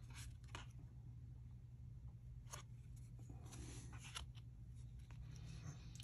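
Faint rustling and sliding of trading cards handled in the hands as one card is moved off the stack, a few soft scrapes over a low steady hum.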